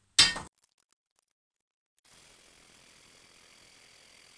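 A single short, sharp metallic clink at a small metal-cutting band saw as the steel bar and saw are handled, then a second and a half of dead silence, followed by a faint steady hiss with thin high whines.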